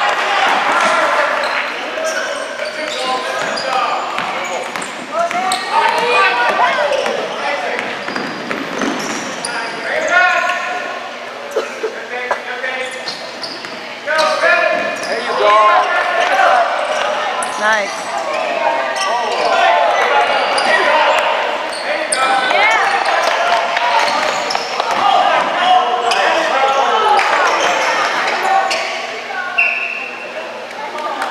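A basketball being dribbled on a hardwood gym floor during a game, with players and spectators calling out throughout. The sound echoes in the large hall.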